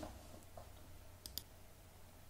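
Quiet room tone with a short double click just past halfway, a computer button being pressed and released to advance the presentation slide.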